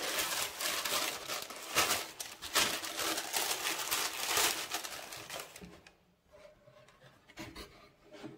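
Tissue paper crinkling and rustling as it is pulled out of a cardboard shoebox, dying away after about five and a half seconds. Then a few soft knocks near the end.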